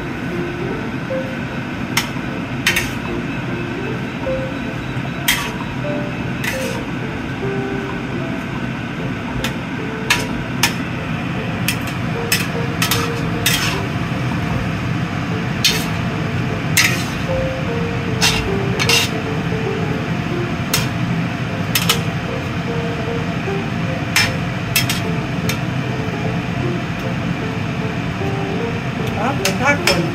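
A metal spatula clinks and scrapes against a stainless steel wok as braised pork and scallions are stirred, with sharp clinks every second or two. Light background music with a simple melody plays under it, over a steady low hum.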